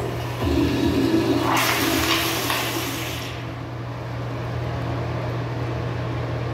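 Commercial toilet's chrome flushometer valve flushing: a loud rush of water starts about a second and a half in and lasts about two seconds, then the water swirls down the bowl more quietly.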